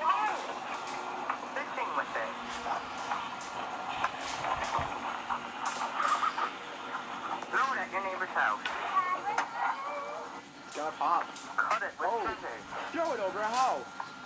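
Two home videos playing at once through small tablet speakers: overlapping children's voices with background music and a few sharp knocks.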